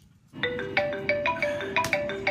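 A mobile phone ringing with a marimba-style ringtone: a quick run of short mallet-like notes, starting about half a second in.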